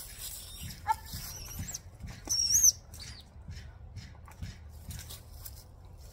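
A hawk flying straight up to a falconer's glove, with soft wingbeats, and a high, wavering bird call about two and a half seconds in, the loudest sound, after a shorter call about a second in.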